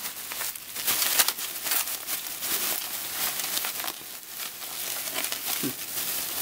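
Plastic bubble wrap being pulled open and handled, a continuous crinkling rustle dense with small sharp crackles.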